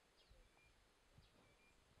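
Near silence: quiet outdoor background with a few faint bird chirps.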